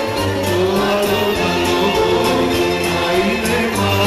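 Live music: two men and a woman singing together into microphones over a band with a steady beat.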